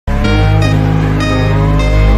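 A car doing a burnout, its engine held at high revs with tyre squeal, mixed under music with a steady low bass.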